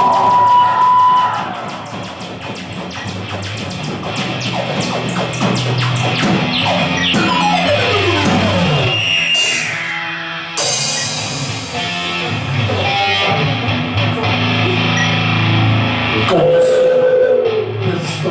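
Rock band playing live with guitar to the fore, including a run of notes sliding downward about halfway through.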